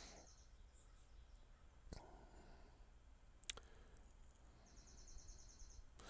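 Near silence: room tone with a faint click about two seconds in, a sharper click about halfway through, and a faint rapid high-pitched ticking near the end.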